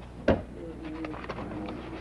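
A single sharp knock or click about a third of a second in, followed by faint low wavering sounds in the room.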